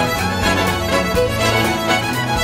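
Live band with a string section playing an instrumental passage, fiddle to the fore, over a steady beat of about two a second.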